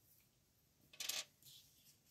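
A glue stick being picked up and handled on a wooden tabletop: one brief, light clatter about a second in, then faint handling.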